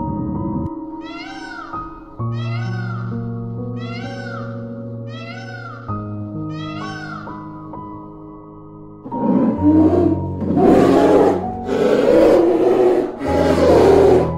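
Animal calls over soft background music: a call that rises and falls in pitch, repeated five times about a second apart, then from about nine seconds loud, rough calls in four or five bursts.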